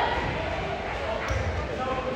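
Echoing gymnasium: voices talking over a couple of low thuds of a volleyball bouncing on the hardwood floor.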